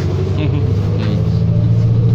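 Inside a New Flyer XD40 diesel city bus on the move: the engine and drivetrain give a steady low drone with road rumble under it, growing slightly louder near the end.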